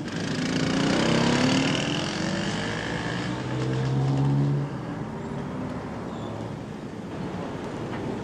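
Road traffic: a motor vehicle's engine passing close, its hum gliding downward and cutting off about four and a half seconds in, over continuous traffic noise.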